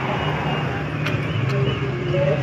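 A motorcycle engine runs steadily with a low hum under the chatter of a crowd standing by the road.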